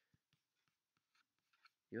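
Near silence, broken by a few faint, scattered clicks of a computer mouse.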